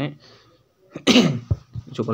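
A man sneezes once, loud and short, about a second in.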